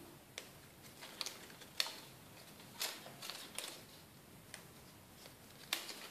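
Faint, scattered light clicks and rustles as a roll of glue dots is handled and dots are peeled off onto a paper strip, about a dozen small ticks over the few seconds.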